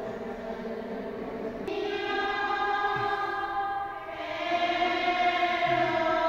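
Slow church music in long held chords: the chord changes about two seconds in and again about four seconds in, and it grows louder after each change.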